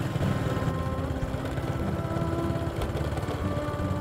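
Motorbike engine running at a steady cruising speed, an even low pulsing note that holds without revving up or down.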